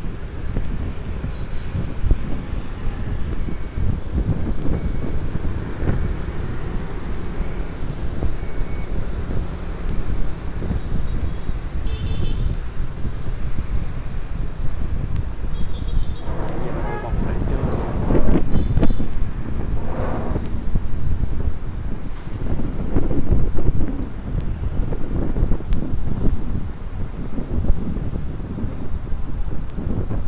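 Street traffic of motorbikes and cars passing on a road below, with wind buffeting the microphone as a steady low rumble. A vehicle passes louder from about sixteen to twenty-one seconds in, and brief horn toots sound around twelve and sixteen seconds in.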